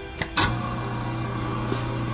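Countertop push-button air switch pressed with a click, then the InSinkErator garbage disposal motor starts and runs with a steady hum: the newly installed air switch turns the disposal on.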